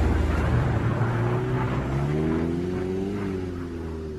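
A motor vehicle engine running and revving, its pitch climbing over about a second and then dropping, the whole slowly fading.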